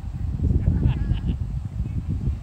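A distant voice calling out in a few short cries about a second in, over a steady low rumble.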